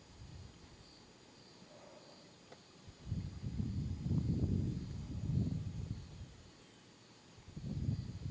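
Faint insect chirping, a short high note about every half second, over a low rumbling noise that swells about three seconds in and again near the end.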